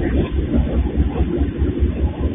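Diesel freight locomotives working uphill under load as they pass close by, their engines giving a loud, deep throb that pulses rapidly.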